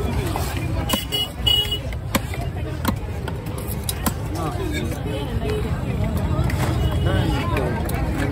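A heavy knife chopping fish on a wooden log block: several sharp chops, most of them in the first half, over a steady low rumble and voices.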